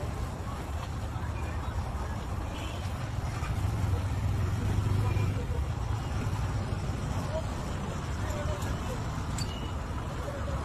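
A steady low rumble of background noise like road traffic, swelling a little around the middle, with indistinct voices mixed in.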